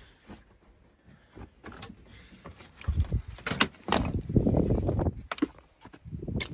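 Footsteps and knocks as someone moves through and steps out of a derelict RV. A few faint clicks come first, then a run of louder thumps and scuffing from about three seconds in that ends shortly before the close.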